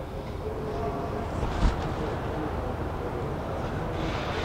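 A rope being tied off around a steel table leg: soft handling sounds and a light knock about one and a half seconds in, over a steady low background rumble.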